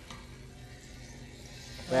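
Battered bread frying in melted vegan margarine in a skillet: a low, even sizzle.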